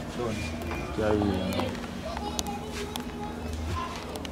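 Indistinct voices talking over music playing in the background, with a steady bass line.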